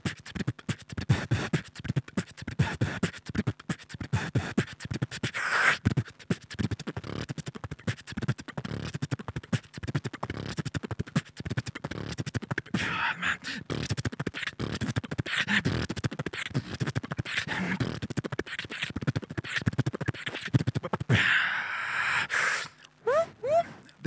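Solo human beatboxing into a cupped handheld microphone: a fast, dense stream of mouth-made kick, snare and hi-hat hits. Loud hissing bursts come about five seconds in and again near the end, followed by a few short rising pitched vocal glides.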